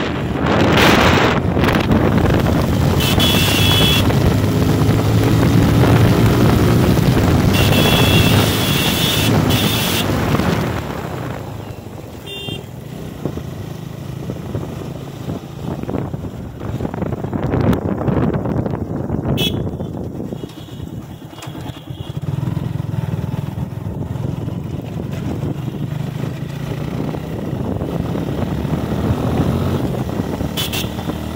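Motorcycle engine running under way with wind rushing over the microphone, loud and rising in pitch through the first ten seconds, then easing off and quieter before picking up again near the end. A high steady tone sounds twice in the first ten seconds.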